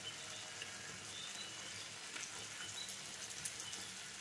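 Chicken curry sizzling faintly in a kadai on the stove, a steady low crackle.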